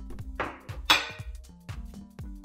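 Background music with a steady beat. Just under a second in comes a single sharp clink, likely the stainless-steel pepper shaker being set down on the stone countertop.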